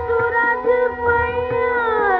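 Hindustani thumri music from a live concert tape: a long melodic line held on one pitch over a steady drone, sliding down near the end.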